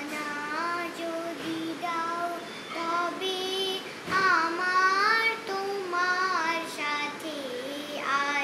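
A young girl singing alone, without accompaniment, in long held notes that glide between pitches; her loudest phrase comes about halfway through.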